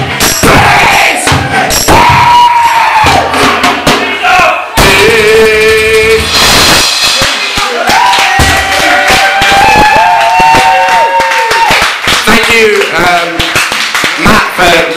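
Live band music with acoustic guitar and drums, and voices singing and shouting long held notes, with a crowd joining in.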